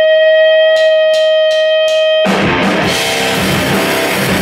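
A steady, sustained electric guitar tone rings while four evenly spaced drumstick clicks count the band in. About two seconds in, the full rock band starts playing loudly with electric guitars, bass and drum kit.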